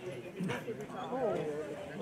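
Indistinct talking of people in the background, with no clear words.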